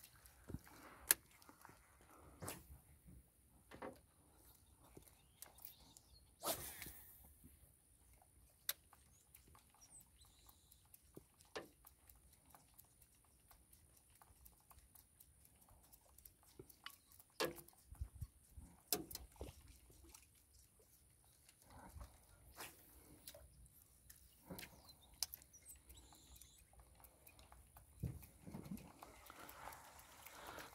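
Near silence, broken by scattered faint clicks and knocks, with a thin steady high tone underneath.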